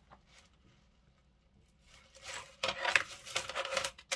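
Metal jewelry being handled on a plastic tray: chains and bangles jingle and click in a quick, irregular run that starts about two seconds in, after near silence.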